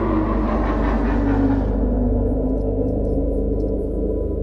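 Dark ambient background music: a low, steady drone with sustained gong-like ringing tones. A hiss above it fades out a little before halfway.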